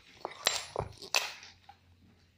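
A few sharp knocks and clicks, about four in the first second and a half, as a plastic-bodied Maktec MT-80B drill is handled and turned over; the drill is not running.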